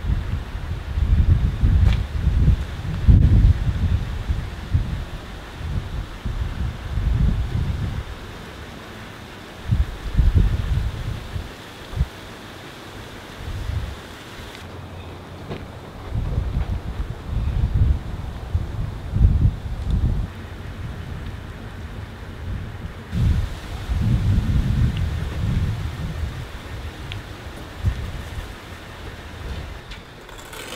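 Wind buffeting the microphone outdoors, in irregular low rumbling gusts that swell and die away every second or two.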